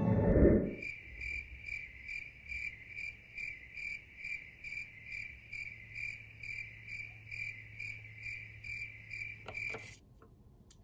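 Cricket chirping steadily and evenly, about two and a half chirps a second, over a faint low hum. The tail of music fades out in the first half second, and there are a couple of faint clicks near the end.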